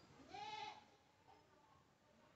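A cat gives one short, faint meow of about half a second, its pitch rising and then falling.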